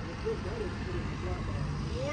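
Steady low rumble of road traffic, with faint talking in the background.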